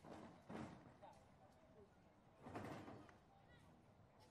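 Faint, distant voices of people around a sports ground, with two brief louder rushes of noise about half a second and two and a half seconds in.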